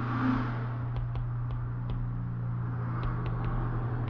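A steady low hum with a few faint light taps of a stylus on a tablet screen while handwriting is written.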